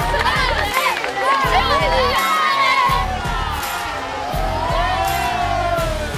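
A crowd of children shouting and cheering together, many voices overlapping with long held calls, over background music with a steady bass beat.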